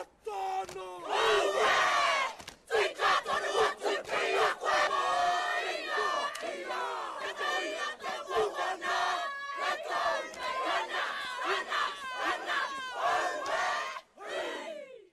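A group of voices performing a Māori haka: loud shouted chanting in unison, with cries and calls.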